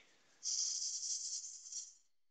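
A woodturning tool cutting inside a hollow wooden form spinning on a lathe: a hissing scrape of shavings that starts about half a second in and lasts about a second and a half.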